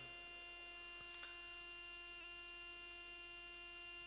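Faint, steady electrical hum from the sound system: several constant tones held at an even level, with a couple of very faint ticks.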